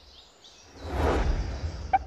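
A soft whoosh sound effect: a noisy swell with a low rumble that builds about a second in and then fades away.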